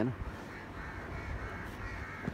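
Birds calling: a run of short, repeated calls over faint outdoor background.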